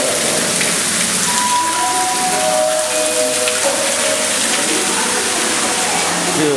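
Steady hiss of churning, splashing water in a rock-pool water feature.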